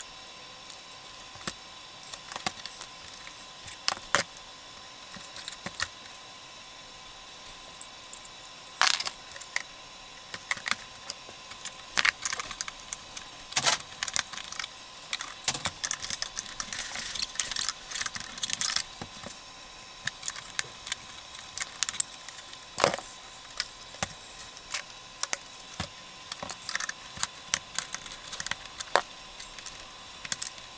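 Hard plastic body shell of an RC scale Jeep JK being handled and worked on at a bench: irregular clicks, taps and rattles of plastic parts and small hardware, busiest in the middle, over a faint steady hum.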